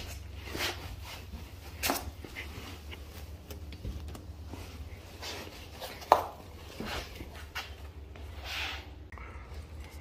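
Microfiber cloth wiping the underside of a car's front bumper in a few irregular strokes, over a steady low hum, with a single sharp knock about six seconds in.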